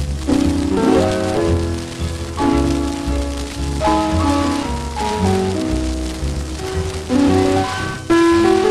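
Music played from a 78 rpm shellac record: a melody of notes changing every fraction of a second, with guitar and rhythm accompaniment, under the crackle and hiss of the disc's surface noise.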